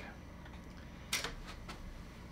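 A plastic lens cap taken off a camera lens and put down on a wooden table: one sharp click about a second in, then a couple of faint ticks.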